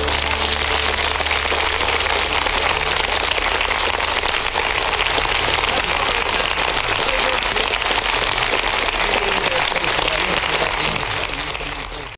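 Studio audience applauding steadily, a dense even clatter of many hands, fading out at the very end.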